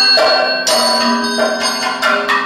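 Chengila, the bell-metal gong of a Kathakali ensemble, struck with a stick several times, each stroke ringing on with bright overtones.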